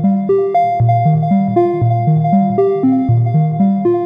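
VCV Rack software modular synthesizer playing a sequenced pattern of short plucked notes, about four a second, each decaying quickly over a repeating bass line, stepped by the Path Set Glass Pane sequencer.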